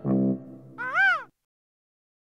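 The last keyboard note of a short music jingle, then a single seagull cry about a second in, rising and falling in pitch, that ends the jingle.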